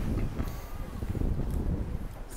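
Wind buffeting the microphone: an irregular low rumble with no clear pitch.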